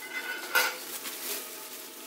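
Enamelled metal bowl clinking as it is handled and set down, with one sharp knock about half a second in that rings briefly.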